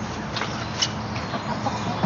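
Domestic chickens clucking: a few short, separate clucks from hens in a backyard coop, over a steady low hum.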